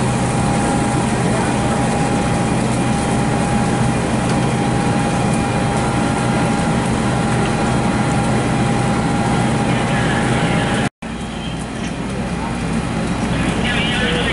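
Fire apparatus engine running steadily, a loud constant drone with a thin steady whine over it. About eleven seconds in it cuts off abruptly, and a lower, quieter rumble follows with faint voices.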